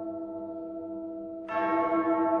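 A single large church bell tolling: the previous stroke fading away, then one new strike about a second and a half in that rings on.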